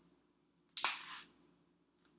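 Banana being peeled by hand: a single sharp snap as the stem end breaks about a second in, followed by a brief tearing of the peel being pulled down.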